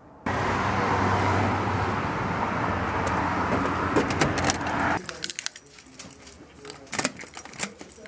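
A steady rushing noise for about the first five seconds, then, after a sudden change, keys jangling with sharp metallic clicks as a key is worked into the lock of a brass post office box door.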